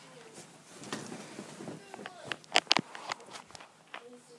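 Handling noise of a phone camera being carried: footsteps and rustling, then several sharp clicks and knocks about two and a half to three and a half seconds in.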